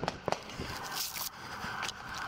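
Handling noise on a body-worn camera as the officer moves: rustling and scraping with a few sharp knocks, loudest in the first half-second.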